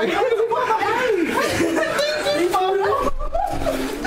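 A small group of people talking over one another and chuckling and laughing.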